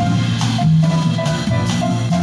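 Small jazz group playing live: grand piano, upright double bass walking a low line, and drum kit with cymbals.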